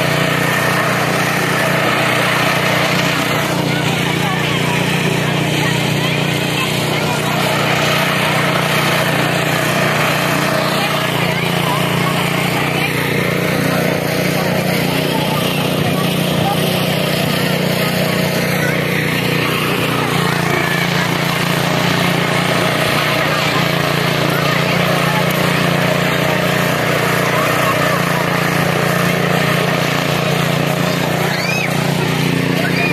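A steady low engine drone under the chatter of a crowd of people.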